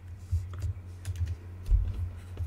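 Scattered computer keyboard key clicks from editing at a computer, with a louder low thump near the end, over a steady low hum.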